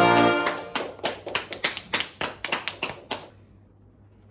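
A short sustained musical chord ends just after the start. It is followed by about three seconds of quick, steady hand clapping, five or six claps a second, which stops shortly before the end.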